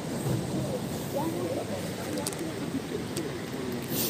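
Indistinct chatter of many people talking at once, with no single voice standing out, and a few faint clicks.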